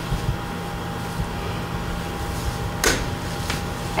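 Room tone in a lecture room: a steady electrical hum under low background noise, with one short sound about three seconds in.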